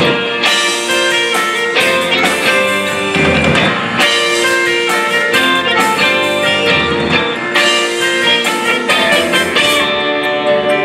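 Live rock band playing an instrumental passage on electric guitar, bass guitar, drum kit and keyboards, with a saxophone at the start, loud and steady with a regular drum beat.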